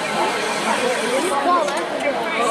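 Indistinct voices of several people talking over one another: the chatter of a crowd of spectators.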